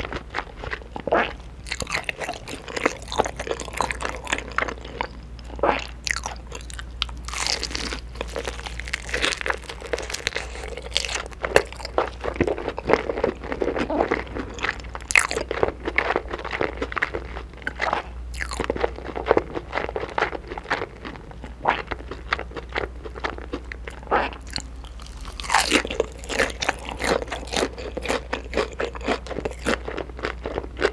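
Close-miked biting and chewing of sauce-glazed crispy fried chicken (KFC smokey barbecue chicken): many sharp, irregular crunches from the coating as it is bitten and chewed.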